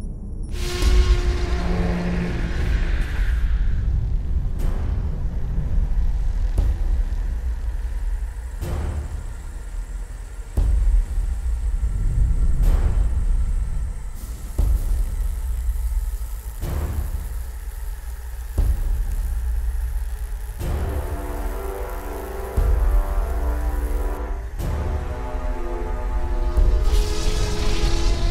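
Dark, tense film score over a deep low rumble, with heavy hits about every two seconds. A layer of sustained pitched notes comes in about twenty seconds in.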